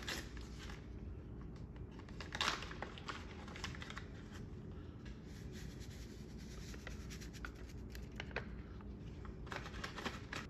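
Dry salad-dressing mix packet crinkling and rustling as it is opened and emptied, with scattered small clicks and one louder rustle about two and a half seconds in.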